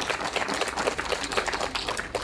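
A small audience applauding: a steady patter of many hands clapping.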